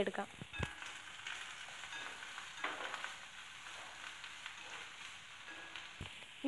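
Chopped onions sizzling faintly in hot oil in a kadai, with a few scrapes of a metal slotted spoon stirring them.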